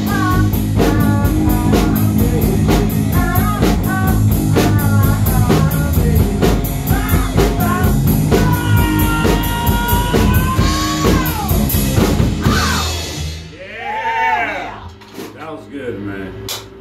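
Rock band playing live: electric guitar, drums and a sung lead vocal, with a long held vocal note that falls away near the end of the song. The band stops about thirteen seconds in, and a few last sung notes follow.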